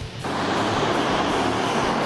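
Indoor rental go-karts running on the track: a steady, loud noise of engines and tyres that cuts in suddenly about a quarter second in.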